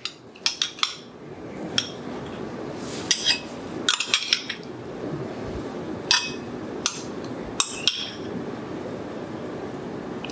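A metal spoon clinking against a cut-glass bowl and stemmed wine glasses as mandarin orange segments are spooned in. There are about a dozen light, ringing clinks at irregular intervals.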